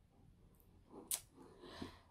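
A small plastic letter piece being pressed into a felt letter board: one faint sharp click about a second in, then a soft rustle.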